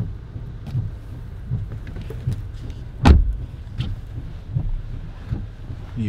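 A person climbing into the back seat of a Jeep, with light knocks and rustling over a low rumble of the car. There is one loud thump about three seconds in as the rear door shuts.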